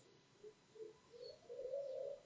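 A faint bird cooing in the background: a run of soft, low notes that grows a little louder towards the end.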